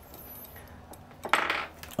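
Stainless steel card multi-tool clinking and scraping against a small hex bit as the bit is fitted into the card's hex wrench opening: a brief metallic clatter a little past the middle, with faint handling before it.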